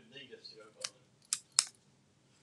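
Small craft scissors snipping a cardstock strip: three short, sharp snips in the second half, as a thin edge is trimmed off.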